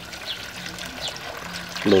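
Water from a garden hose pouring into a half-full plastic container, filling it with a steady stream.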